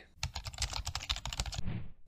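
Rapid typing on a computer keyboard: a quick run of keystroke clicks lasting about a second and a half, then stopping. It is a typing sound effect for an animated channel logo.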